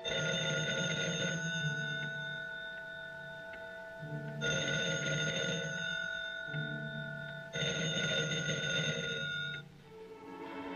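Telephone bell ringing three times, each ring lasting about two seconds, with pauses between. The handset stays on its cradle, so the incoming call goes unanswered. Soft sustained orchestral film music plays underneath.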